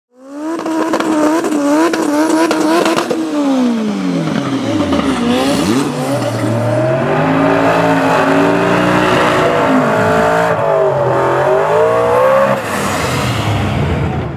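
Mustang drag car doing a burnout: the engine is held at high revs with the spinning tyres squealing and hissing. The revs drop about three seconds in, then rise and fall several times.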